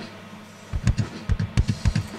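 Recorded rock drum kit played back in a mixing session, kick drum to the fore: quiet at first, then a quick run of drum hits from about three-quarters of a second in. The kick was recorded with an Antelope Verge modelling microphone and is heard through its Berlin K86 emulation while the emulation is switched against bypass.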